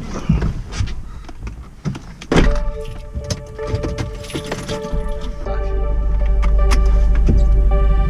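Clicks and rustles of someone getting into a car, with a car door slamming shut about two seconds in. Background music then comes in and grows louder, with a heavy bass, over the second half.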